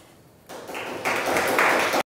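Audience applauding, coming in about half a second in and growing louder, then cut off abruptly.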